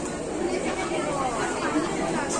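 Chatter of several people talking at once, overlapping voices.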